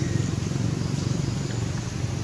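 Steady low rumble of a nearby motor-vehicle engine, with a fine even pulse to it.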